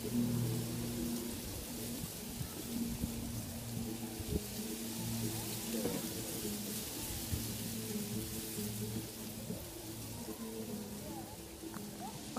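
Faint background music with sustained low notes that come and go, over a quiet murmur of distant voices.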